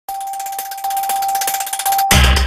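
Synthesized news-logo intro sting: a single steady high tone held under a fast, even ticking shimmer, building up to the logo's reveal.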